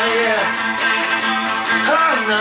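Electric guitar strummed in a steady, even rhythm during an instrumental break in a folk-rock song.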